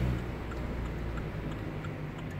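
Car's turn-signal indicator ticking steadily inside the cabin, over a low engine and road hum that drops off shortly after the start.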